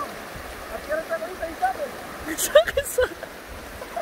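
Shallow river rapids rushing steadily over rocks, with short fragments of voices and a brief crackling burst a little past two seconds in.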